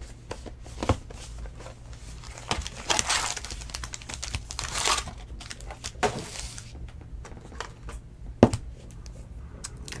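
Foil-wrapped trading card packs crinkling and rustling as they are pulled from a cardboard hobby box and stacked, with a few sharp taps, the sharpest about eight and a half seconds in.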